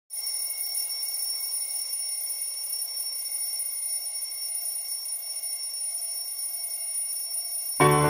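LEGO Stormtrooper digital alarm clock going off with a steady, high-pitched electronic alarm. Piano music comes in just before the end.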